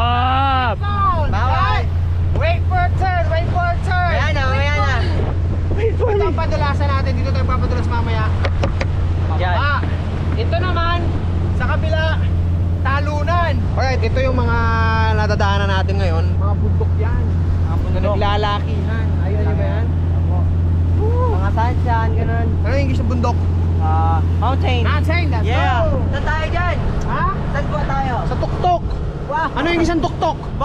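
Steady low drone of a boat's engine under way, with voices over it throughout; the drone drops away near the end.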